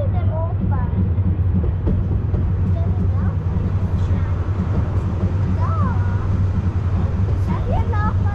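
Brienz Rothorn Bahn rack railway train running, a steady low rumble with a fast flutter heard from the open carriage. Passengers' voices break in briefly at the start, a little past the middle and at the end.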